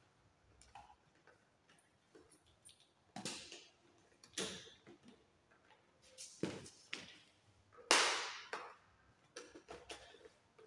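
White plastic cable trunking cover being pressed onto its base by gloved hands: a scattered series of sharp plastic clicks and snaps, the loudest a couple of seconds before the end.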